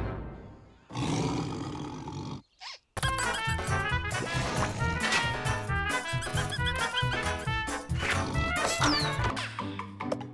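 Cartoon soundtrack: a short noisy sound effect in the first couple of seconds, a brief break, then bouncy background music with many quick notes over a steady beat.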